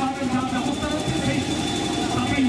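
Indistinct voices of people talking at a steady level, over a continuous low background rumble.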